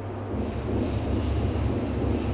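Steady low rumble of microphone noise, coming in about a third of a second in and holding.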